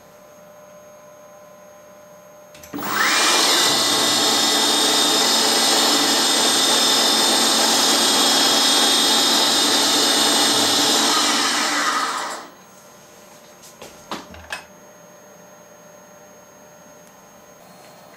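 CNC milling machine spindle spinning up about three seconds in, then running at high speed with a steady high whine while a 1.5 mm end mill makes one full-depth pass around the corners of a small carbon-steel part; it stops about twelve seconds in. A couple of faint clicks follow.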